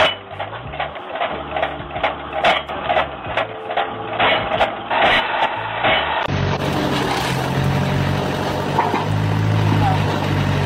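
Rhythmic knocking over music for about six seconds, then a steady engine hum from a log splitter.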